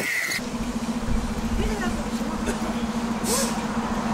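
City bus engine idling close by: a steady low hum over a deep rumble, starting about half a second in.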